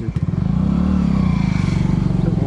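A motor vehicle's engine running close by, its pitch rising and then falling again over about a second.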